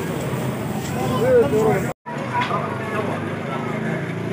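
Street market bustle: people talking in the background over a steady hum of noise. The sound drops out for an instant about halfway through, then the same bustle returns.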